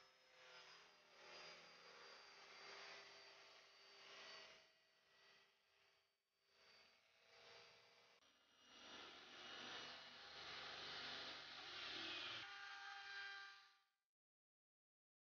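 Faint table saw running as a sheet panel is fed through the blade, louder with added hiss from about halfway through to near the end, then cutting off.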